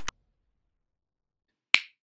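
A short burst of noise that cuts off at the very start, then silence, then a single sharp snap-like click near the end with a brief ringing tail.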